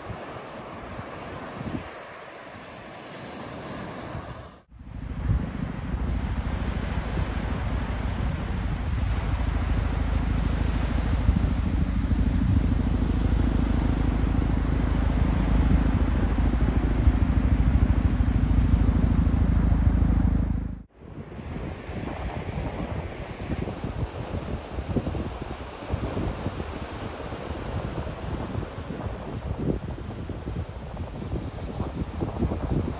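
Surf and wind on the microphone, then a loud, steady low rotor drone with a fine rapid beat from two helicopters flying by. The drone starts suddenly about five seconds in, lasts about sixteen seconds and cuts off abruptly, leaving surf and wind again.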